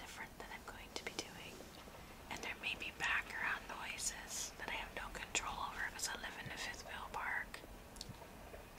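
A woman whispering softly, the words too breathy to make out, with a few small clicks in between.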